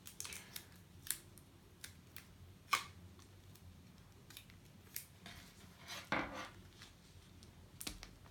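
Faint, scattered small clicks and a short rustle of hands handling clear sellotape on a notebook's vellum and acetate pages, the sharpest click a little under three seconds in.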